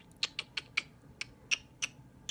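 A run of light, sharp clicks, about seven in two seconds, irregularly spaced.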